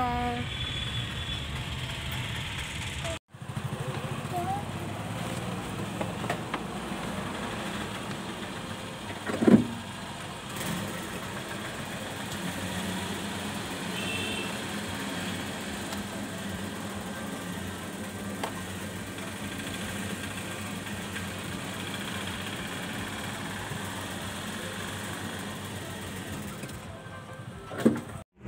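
Steady low vehicle engine hum at a petrol station, with faint background voices. There is a short dropout about three seconds in and a brief loud bump about nine and a half seconds in.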